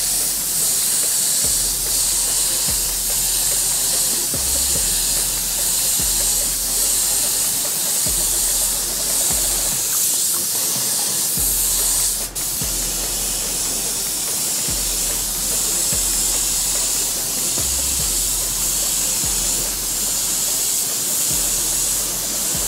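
Gravity-feed mini spray gun spraying a coat of red candy paint, a steady hiss of air and atomised paint with a short break about halfway through.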